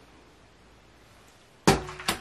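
Quiet room tone, then one sudden loud knock near the end that dies away quickly.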